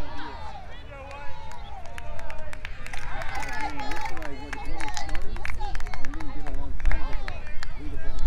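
Several indistinct voices calling out across a youth soccer field, overlapping, with scattered short clicks and a steady low rumble beneath.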